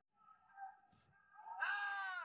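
A high-pitched, drawn-out cry that rises and then falls in pitch, starting about one and a half seconds in; before it there is only faint background sound.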